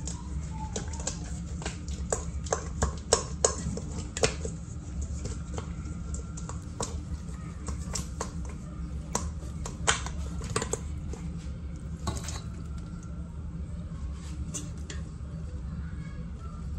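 Sauced rib pieces being shaken in a metal mixing bowl: quick clattering knocks, a rapid run of them in the first few seconds, then scattered single knocks.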